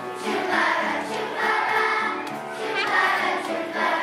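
A children's choir singing a song together, voices holding notes that change every half second or so.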